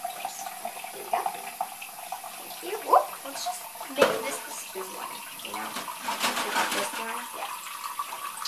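Kitchen faucet running steadily, its stream splashing into and over a plastic cup being rinsed in a sink of soapy water. Two sharp knocks stand out about three and four seconds in.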